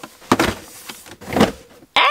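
Cardboard shoe boxes being pushed and slid along a wire closet shelf: a few short scraping rasps, the loudest about a second and a half in.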